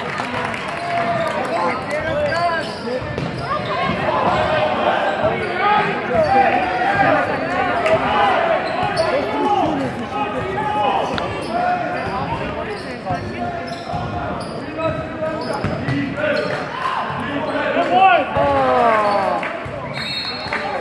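A basketball being dribbled on a hardwood gym floor, with players and spectators shouting and chattering, echoing in the gym.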